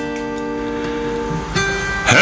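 Acoustic guitar chord ringing on, with a fresh strum about one and a half seconds in.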